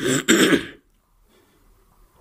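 A man clearing his throat with one short, rough cough that lasts under a second.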